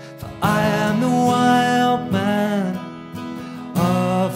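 Folk song performed live on acoustic guitar with a man singing. It comes back in strongly about half a second in after a brief lull, with the held, gliding vocal notes dropping away around two seconds and returning near the end.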